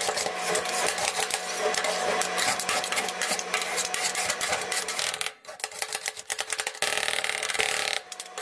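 Two metal spatulas rapidly chopping and scraping ice cream against a steel cold plate, a dense run of clicks and scrapes. There is a brief pause about five seconds in, then a steadier scraping near the end.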